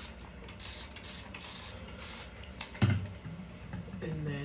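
A trigger spray bottle spritzing water onto hair to wet it, in several quick hissing sprays, followed by a single thump a little before the end.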